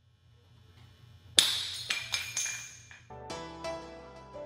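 A REOS LP Grand box mod dropped from shoulder height hits the floor with one sharp, loud clack and a ringing tail, then bounces twice with smaller knocks. About three seconds in, background music starts.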